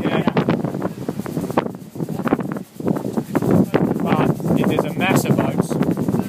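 Indistinct voices talking on board a sailing yacht under way, with a short pause near the middle. Under the voices are wind on the microphone and water rushing past the hull.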